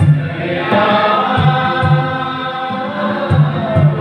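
A congregation singing a Bodo-language hymn together, with a steady low beat repeating about every two-thirds of a second.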